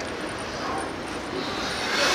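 Steady rushing background noise, with a louder hiss swelling near the end.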